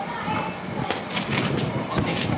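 A quick run of sharp clacks, about four in half a second, as simulated sparring swords strike each other, about a second in, with voices in the background.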